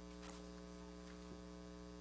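Faint, steady electrical mains hum in the meeting-room audio feed, with no other sound.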